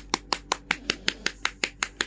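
A rapid, even run of sharp finger taps on bare skin, about six a second: tapping a forearm to bring up a vein before an injection.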